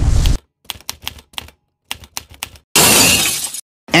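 Edited sound effects: a loud blast cuts off just after the start, then a scatter of short sharp clicks and clinks with silent gaps between, and a loud burst of noise lasting under a second near the end.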